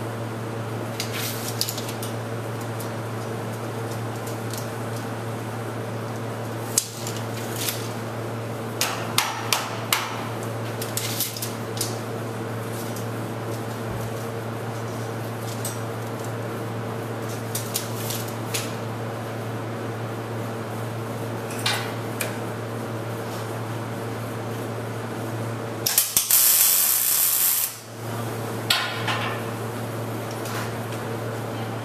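Scattered metal clinks and knocks as hand tools, a clamp and a tape measure are handled against a steel tube frame, over a steady shop machinery hum. Near the end a louder hiss lasts about two seconds.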